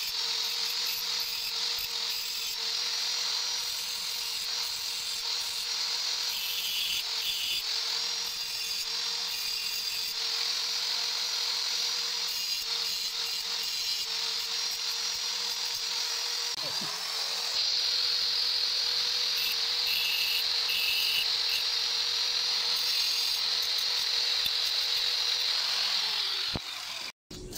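Handheld electric angle grinder with a cutting disc running steadily with a high whine, used to trim a motorcycle step-grill bracket. Its speed dips briefly and picks up again about two-thirds of the way through.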